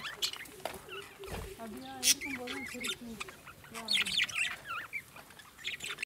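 Caged birds chirping and squawking, short wavering calls and higher chirps one after another, over faint voices.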